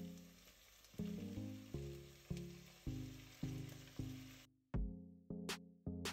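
Minced beef and onions sizzling in a pot, under background music of single notes that each ring and fade. A bit past halfway the sizzle cuts out suddenly and the music carries on with a drum beat.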